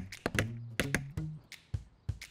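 A quick run of hammer knocks, about six or seven strikes, over background music with short low bass notes.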